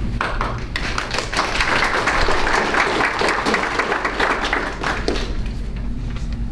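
A roomful of people applauding, starting about a second in and dying away near the end.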